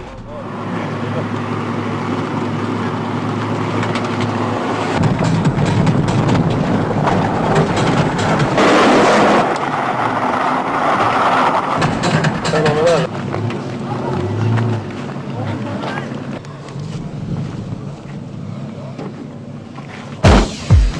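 Convertible sports car engine running and revving as the car drives. About halfway through, a burst of noise as the tyres slide and spray loose gravel.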